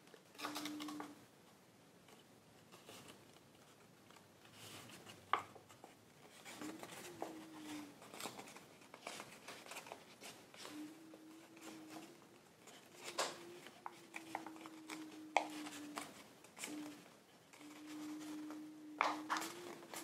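Thick Stark origami paper rustling and crinkling as hands press and flatten its box-pleated accordion folds, with a few sharp crackles along the way. A faint low hum comes and goes underneath.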